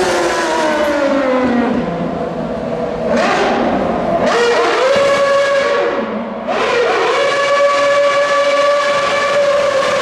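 Red Bull Formula 1 car's 2.4-litre Renault V8 running loud at high revs. Its pitch falls away over the first two seconds, then climbs and holds steady, dips briefly about six seconds in, and climbs and holds again.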